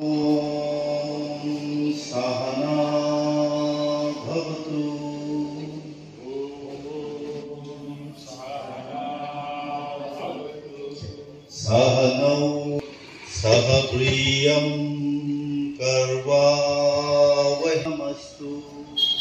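A man chanting a prayer mantra into a microphone, in long notes held on a steady pitch with short breaks between phrases, a little quieter in the middle.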